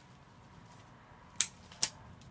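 Two sharp snips of florist's scissors cutting flower stems, about half a second apart, in the second half.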